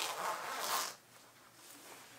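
A rasping rustle of clothing close to the microphone, lasting about a second, then quiet room tone.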